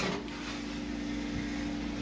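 Steady low electrical hum with a faint hiss, holding one even tone.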